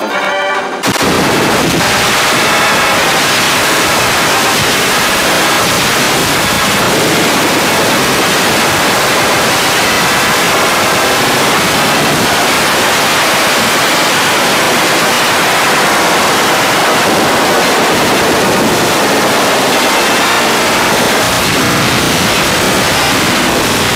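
Loud, harsh crackling static that cuts in abruptly about a second in, ending a brief bit of cartoon music, then runs on steadily as a wall of noise.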